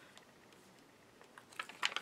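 Faint, sparse clicks and light handling noise from plastic-wrapped sticker sheets and packaging being sorted by hand, mostly quiet, with a few small ticks near the end.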